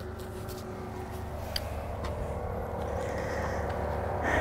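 Quiet steady low background rumble with a faint thin hum above it, and one small click about one and a half seconds in.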